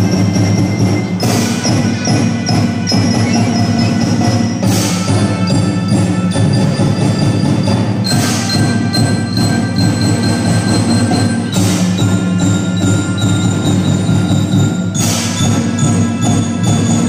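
Youth drum band playing a tune on melodicas and mallet keyboards, the tones sustained, with a cymbal crash about every three and a half seconds.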